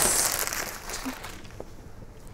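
Clear plastic garment bag crinkling as a dress is pulled out of it, loudest at first and dying away after about a second and a half.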